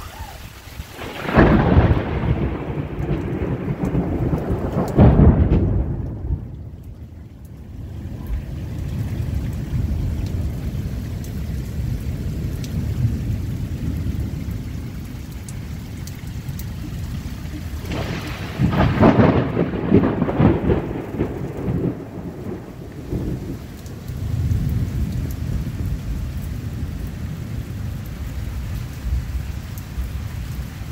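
Heavy rain falling steadily in a thunderstorm, with loud thunder: a clap soon after the start and another a few seconds later, then more thunder past the middle, rumbling away low.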